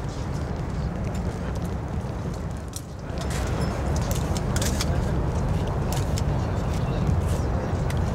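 Outdoor background of voices over a steady low rumble; after a cut about three seconds in, press photographers' still-camera shutters click repeatedly, several in quick succession.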